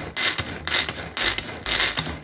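Tupperware pull-cord hand chopper fitted with blades, its cord pulled again and again, about four pulls in two seconds, each pull a short rush of rubbing noise as the blades spin through a pumpkin cake batter.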